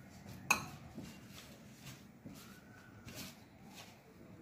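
A stainless steel utensil clinks once against a steel plate about half a second in, with a short metallic ring. Then come softer rustles of a hand mixing dry flour, grated radish and spices in the plate.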